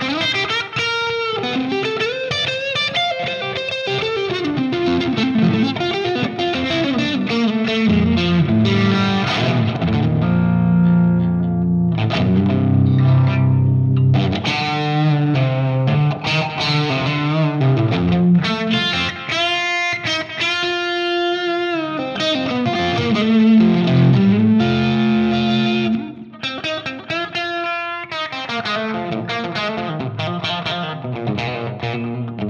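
Fender electric guitar played through a ThunderTomate Mild Overdrive, a medium-gain germanium-diode overdrive pedal: a continuous lead line with bent, sliding notes and some long held notes. The playing gets quieter for the last few seconds.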